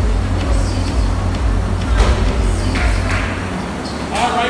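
Air rowing machine in use: its fan flywheel runs with a steady low drone that swells and eases with each stroke, with a sharp knock about halfway.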